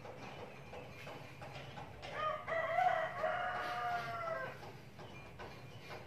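A rooster crowing once: one long, high call of about two seconds, starting a couple of seconds in.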